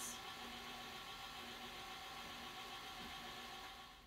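KitchenAid stand mixer running steadily with its dough hook, kneading bread flour into a wet dough; a low, even motor hum that drops slightly near the end.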